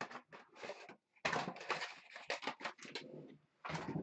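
A cardboard hobby box and its foil-wrapped trading-card packs being handled: the packs slide out of the box onto the table with rustling and scraping, then a heavier thump near the end.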